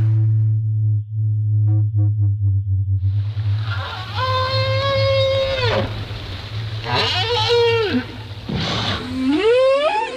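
Right whale calls on an underwater recording: faint calls at first, then a long call about four seconds in that rises, holds one pitch and falls away. A shorter call follows, and a rising call comes near the end, over a steady low hum.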